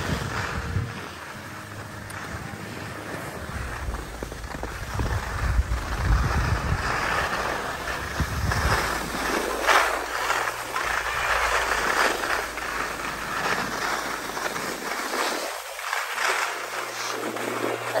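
Skis sliding and scraping over soft snow on a downhill run, a hissing scrape that swells and fades with each turn. Wind buffets the microphone with a low rumble through roughly the first half.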